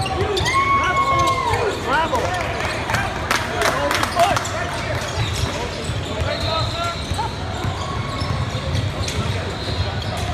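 A basketball being dribbled on a hardwood gym floor during play. Sneakers squeak in high, bending tones in the first two seconds, and indistinct voices carry around the large hall.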